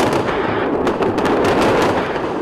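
A rapid, dense crackle of shots or blasts over a continuous heavy roar, like gunfire and bombardment in war footage.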